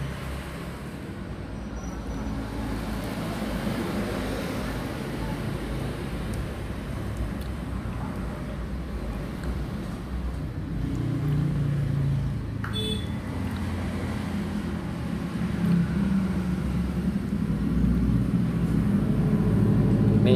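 Low rumble of road traffic that swells somewhat louder near the end, with one short sharp click about thirteen seconds in.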